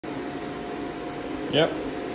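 Steady hum of fans or ventilation with a faint steady tone running through it. A single spoken "yep" near the end.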